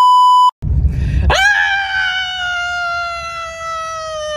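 A steady test-tone beep lasting about half a second, then after a short gap a young man's long, high-pitched yell of "ahh" over the low rumble of a car cabin. The yell starts about a second in and is held for about three seconds, sinking slowly in pitch.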